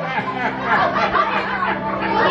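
Several people talking over one another, with a steady low tone underneath.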